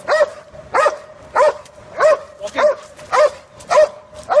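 A large dog barking steadily, about seven loud barks at an even pace of a little under two a second.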